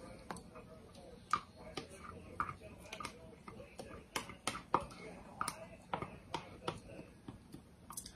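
A silicone spatula scraping and tapping against a measuring cup as the last of the heavy whipping cream is scraped out into a bowl. The sound is a series of faint, irregular clicks and taps.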